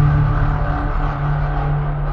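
Closing sound-effect tail of an animated logo sting: a low sustained drone with a rushing rumble over it, slowly fading.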